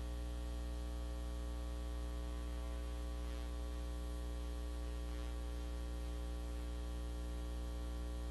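Steady electrical mains hum with a row of overtones on the chamber's microphone feed, and two faint, brief noises about three and five seconds in.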